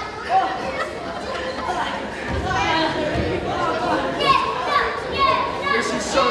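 Wrestling crowd in a hall chattering and calling out, with many voices overlapping and no single voice in front.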